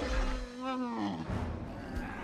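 A dinosaur call from the film's sound design, an Ankylosaurus: one pitched bellow of about a second that rises slightly, then slides down in pitch. It comes after a low rumble at the start.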